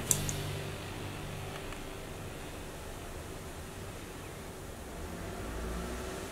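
Low steady background hum of room noise, fan-like, with one faint click just after the start.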